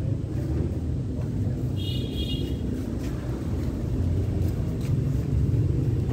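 An engine idling: a steady low rumble. A brief high-pitched tone is heard about two seconds in.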